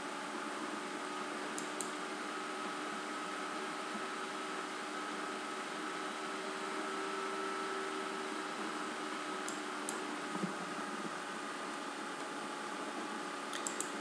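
Steady room hiss with a faint hum, as from a computer fan picked up by a desk microphone, broken by a few faint mouse clicks, with a small cluster of them just before the end.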